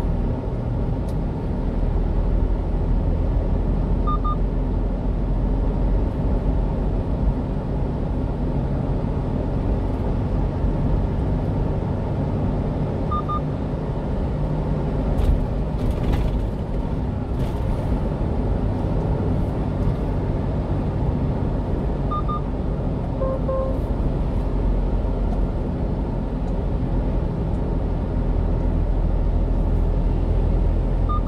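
Steady engine and road rumble of a 1-ton refrigerated box truck cruising on a highway, heard from inside the cab. Short, faint double beeps sound about every nine seconds, with one extra beep pair near the third.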